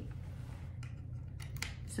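A few faint clicks and light handling noises from a USB-C charging cable and charger being handled, over a steady low hum.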